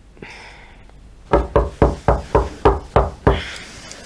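Rapid knocking on a door: about eight quick, evenly spaced knocks, roughly four a second, starting just over a second in.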